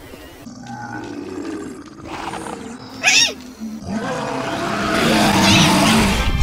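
Monster growls and roars, a film sound effect for zombie-like creatures, with a sharp shriek about three seconds in and growing louder over the last two seconds.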